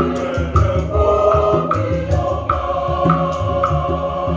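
Mixed choir singing in harmony, accompanied by two hand drums played in a steady rhythm, with a crisp high percussion stroke keeping time about every half second.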